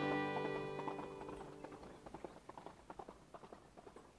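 The last chord of a fiddle tune rings out and dies away, while a horse's hooves clip-clop at a walk, getting fainter.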